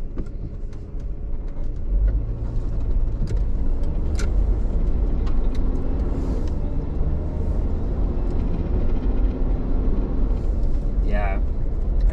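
Road noise inside a pickup truck's cabin while driving: a steady low engine and tyre rumble that grows louder about two seconds in.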